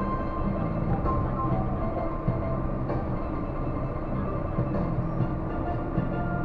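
Disney Resort Line monorail running with steady noise from the car, while background music plays over it.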